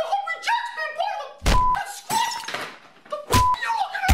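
Two heavy thuds, about two seconds apart, each with a brief high tone in it, amid bursts of voice.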